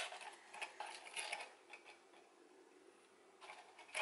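Faint handling of a cardboard cookie box, with a few light rustles and taps in the first second and a half and again just before the end.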